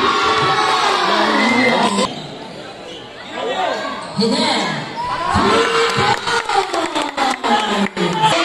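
Spectators shouting and cheering at a basketball game, dying down briefly about two seconds in and rising again. In the last couple of seconds a quick, irregular run of sharp knocks sounds over the voices: the basketball bouncing on the concrete court.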